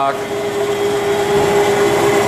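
Haas TL4 CNC lathe running, its spindle turning at 50 RPM while the axes traverse: a steady mechanical hum with a single steady tone through it.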